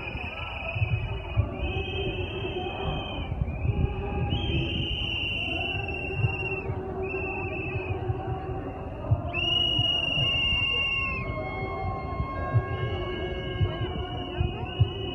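Many whistles blown by marching protesters: long steady blasts of a second or two, overlapping at slightly different pitches, over the low noise of the walking crowd.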